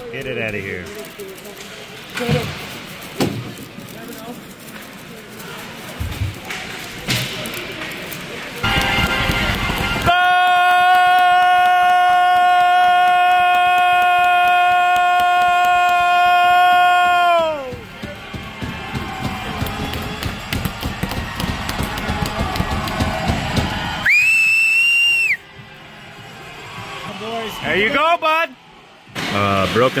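Ice-rink goal horn sounding for about seven seconds, one steady pitched tone that sags in pitch as it cuts out, signalling a goal. It follows a loud burst of noise, and a few seconds later comes a short, high whistle.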